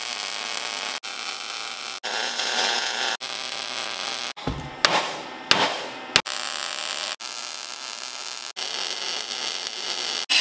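Welding arc crackling and hissing steadily as beads are laid on steel square tubing, in several short runs. Midway the welding stops and a hammer strikes the metal three times in quick succession before the welding picks up again.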